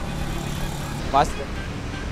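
Street traffic noise: a steady low rumble and engine hum of road vehicles. There is one short, rising voice-like call about a second in.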